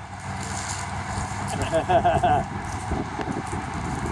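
Wind rumbling and buffeting on the microphone in an open field, with faint voices talking in the background partway through.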